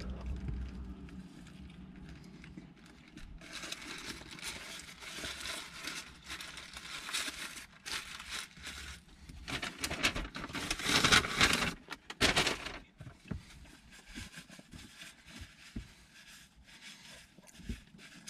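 Paper sandwich wrapper crinkling and rustling in the hands in irregular bursts, loudest about ten to twelve seconds in.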